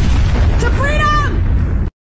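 Explosion sound effect: a loud blast with a heavy low rumble that starts at once and cuts off suddenly near the end.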